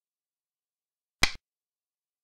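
A single short, sharp click about a second in: the piece-move sound effect of a digital Chinese chess board as a piece is set down on its new point.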